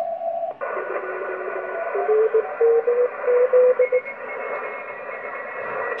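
Yaesu FT-991 receiver audio on the 15 m band in CW mode: steady band hiss with faint steady carrier tones. A steady tone cuts off about half a second in, and from about two seconds in Morse code is keyed in short beeps for about two seconds.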